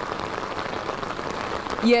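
Steady rain falling on an open umbrella, an even hiss that runs without a break; a woman's voice starts right at the end.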